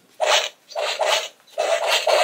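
Power Rangers Dino Fury Morpher toy playing its electronic combat sound effects through its small speaker as it is swung in punches: a quick run of short, noisy hits, about two a second.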